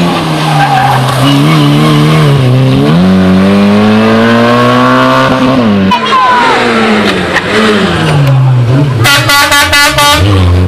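Peugeot 106 rally car engines revving hard, the pitch climbing and dropping through gear changes, with tyre squeal as a car slides through a hairpin. Near the end the engine stutters rapidly, about six pulses a second.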